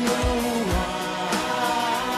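Live pop band playing the close of a song, with long held sung notes gliding between pitches over a regular bass drum beat.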